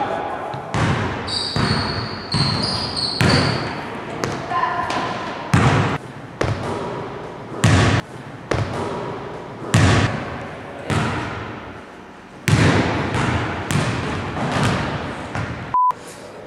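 A basketball bouncing on a gym floor: sharp, uneven thuds about every one to two seconds, each ringing on in the hall's echo. A few short high squeaks sound in the first few seconds.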